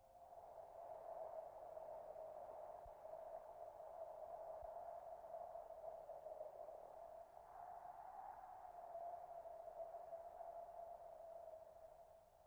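A faint, steady drone on one held note that wavers slightly, with a light hiss above it. It is a soundtrack tone laid over the pictures, not a sound from the place filmed.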